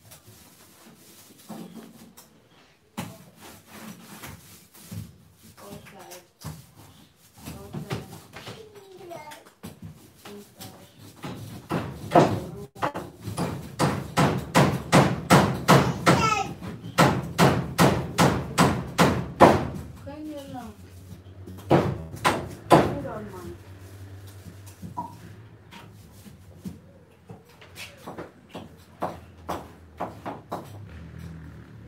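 Indistinct talking, not picked up as words, with a run of quick rhythmic strokes, about two or three a second, through the middle.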